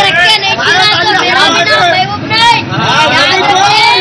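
A boy's raised voice speaking rapidly, with other voices babbling behind it, in a low-quality recording.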